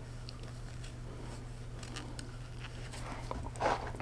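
Faint rustle of a paper tissue being rubbed across the lips to wipe off lipstick, with a few soft clicks, over a steady low hum.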